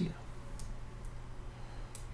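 Two soft computer mouse clicks, one about half a second in and one near the end, over a low steady electrical hum.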